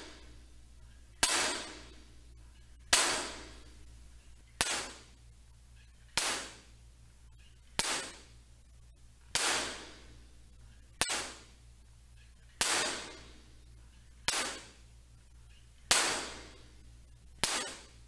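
Sharp hand claps, about eleven, one every second and a half or so, each followed by a ringing echo that dies away. The echo comes from strong reflections off the bare, flat, hard walls of a room with no absorbers or diffusers.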